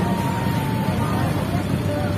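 Street noise: motorcycles and cars running in a steady low rumble, with people's voices mixed in.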